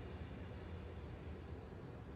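Quiet room tone: a steady low hum with faint hiss, and no distinct sound events.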